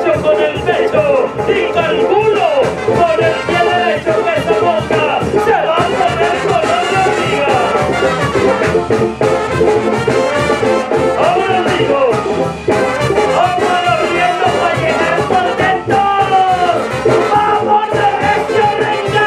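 Latin band music with brass horns playing over a steady beat.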